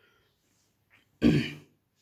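A man clearing his throat once, a short loud rasp about a second in; otherwise little else is heard.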